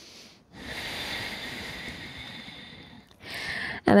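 A woman's long, audible breath lasting about two and a half seconds and slowly fading, then a shorter breath just before she speaks again near the end, taken in time with a slow seated ankle rotation.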